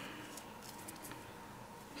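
Faint handling noise over quiet room tone: a few soft, small clicks as hands work pom-pom trim and paper on a craft mat.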